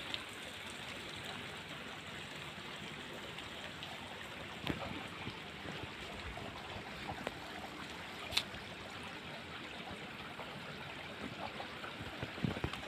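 Steady, faint running water, with two brief faint clicks around the middle.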